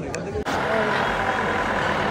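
Street traffic: a vehicle running close by gives a steady rumble and hiss, starting about half a second in after a moment of voices.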